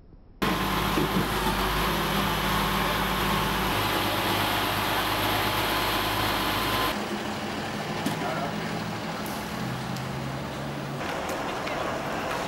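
Outdoor street background with a vehicle engine running steadily, starting suddenly about half a second in and changing at a cut about seven seconds in, with faint voices.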